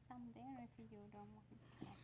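Faint speech: a woman's voice talking quietly, well below the level of the main conversation.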